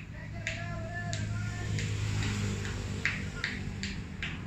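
Six sharp hand claps: three about two-thirds of a second apart, then three quicker ones near the end. A long wavering shouted call runs under the first half, and a steady low hum lies beneath.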